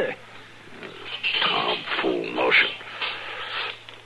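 A man's wordless vocal reaction as he swallows a dose of medicine powder: a sigh, breathy grunts and a falling groan of distaste. A low steady hum from the old broadcast recording runs underneath.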